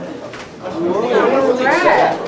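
Men's voices vocalizing without clear words, sliding up and down in pitch, starting under a second in.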